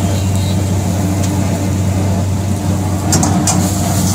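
Large gas wok burner burning with a steady low rush under a carbon-steel wok, with a few short metal clinks and scrapes of the ladle against the wok about a second in and again near the end as the paneer is tossed.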